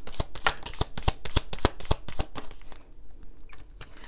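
A deck of oracle cards being shuffled and handled by hand: a quick run of sharp card flicks and clicks that thins out nearly three seconds in, followed by a few quieter taps as a card is picked up.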